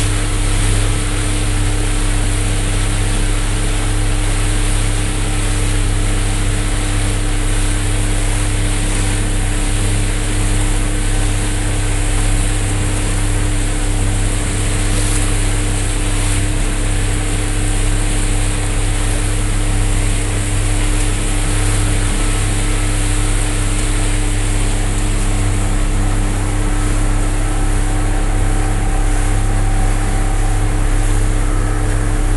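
Steady drone of a Hewescraft Sea Runner aluminum boat's motor running at an even speed, with water rushing past the hull.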